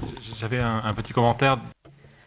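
A person's voice speaking, with no music or other sound under it. It cuts off suddenly near the end.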